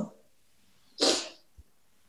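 A short, breathy exhalation or sigh about a second in, a single noisy puff without a clear pitch.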